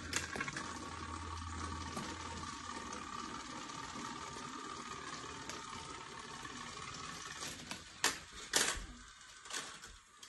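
Battery-powered toy train's small motor and gears whirring steadily as it runs along plastic track, dying away about three quarters of the way through. A few sharp plastic clacks follow near the end.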